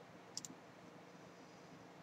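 Near silence: quiet room tone, with two or three faint short clicks close together about half a second in.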